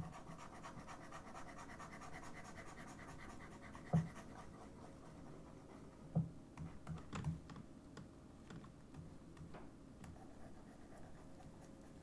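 Faint, scattered clicks and taps from a computer keyboard and mouse, a few seconds apart, clearest about four seconds in and again a couple of times a little later. A faint steady hum runs underneath.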